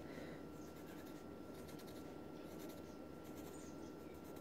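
Faint scratching of a wooden pencil on paper as small dots are drawn.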